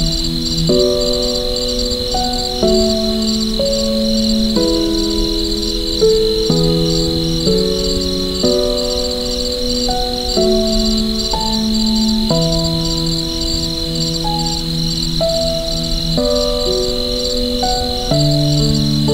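Soft, slow piano playing sustained notes and chords, changing every second or two, over a continuous chorus of crickets chirping in a high, rapidly pulsing trill.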